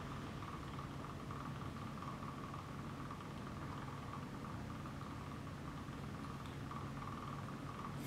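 Steady hum of running lab equipment with a faint constant high whine over it.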